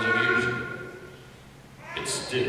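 A voice holding a drawn-out high note that fades away about a second in, followed by a brief lull.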